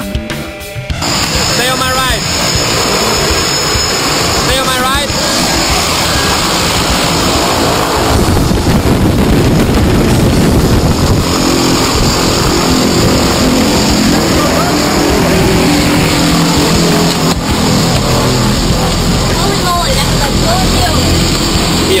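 Jump-plane engines running on the ground, with propeller wash blowing across the microphone as a loud steady roar. The roar grows fuller partway through, and a low engine drone comes through under it from about halfway on.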